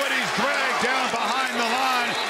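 A man's voice giving television play-by-play commentary on a football play.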